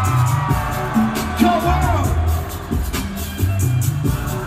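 Live hip-hop music over an arena PA: a rhythmic bass line and steady beat with a sung vocal line, heard from within the audience.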